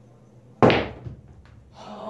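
A single loud, sharp knock from a pool shot, billiard balls striking, about half a second in, followed by a couple of faint clicks.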